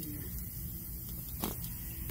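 A steady low outdoor rumble, with one sharp click about one and a half seconds in and a couple of faint ticks after it.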